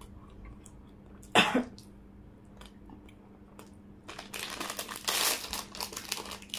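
A single short cough about a second and a half in. From about four seconds in come loud crinkling and crunching noises of someone eating.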